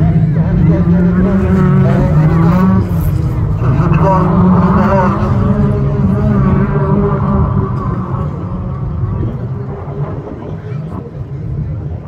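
Autograss racing cars' engines revving and changing pitch as the cars accelerate past on the dirt track. The sound fades over the last few seconds as they move away, with voices over it.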